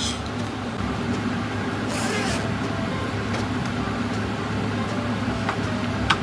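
Steady background noise with a low hum, with a brief hiss about two seconds in and a few faint clicks.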